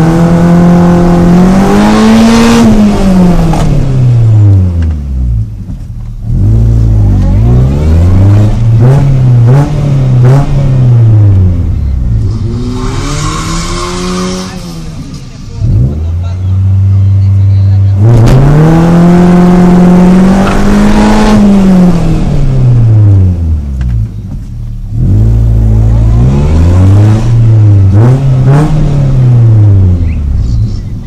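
Car engine heard from inside the cabin, revved repeatedly while the car stands still: its pitch climbs and falls in a few long sweeps, with bursts of quick short blips in between.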